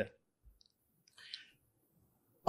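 A pause in a man's speech: near quiet, broken by one faint short click a little over a second in.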